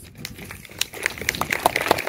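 Boots crunching on a gravel path as a reenactor walks, with irregular clicks and rattles from his kit, growing busier about halfway through.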